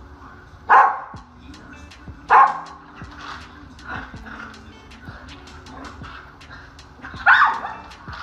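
Dog giving three short play barks while bowing and lunging at a cat: two in the first few seconds and one near the end. Background music runs underneath.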